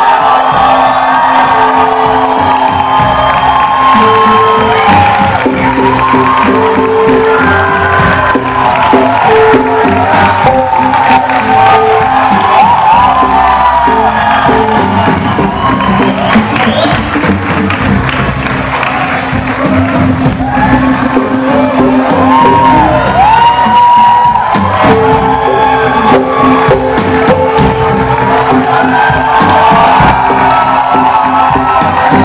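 Live band playing an instrumental intro through a PA: repeating sustained keyboard notes over guitar and drums, loud and continuous. An audience cheers and whoops throughout.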